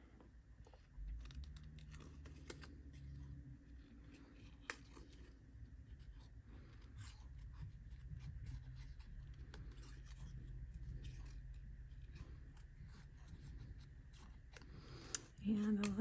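Small pointed paper snips cutting cardstock: a run of faint, irregular snips as the blades close, over a faint low hum.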